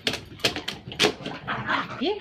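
A dog pawing and biting an empty plastic water bottle on carpet: a few sharp crackles and knocks of the plastic, with a short dog whine among them.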